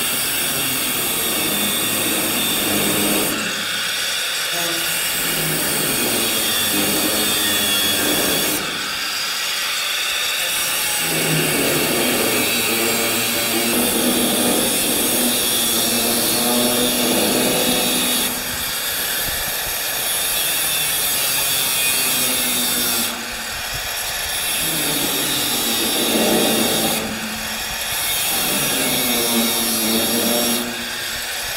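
A Milwaukee angle grinder grinding steel sheet metal on a car body, its motor whining steadily. The pitch and level shift every few seconds as the disc bears into the metal and eases off.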